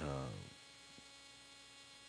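Faint, steady electrical mains hum, following a man's drawn-out 'uh' in the first half second.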